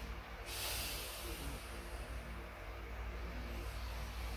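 A man breathing during slow step-up exercise, one long breath of about three seconds starting about half a second in, over a low steady hum.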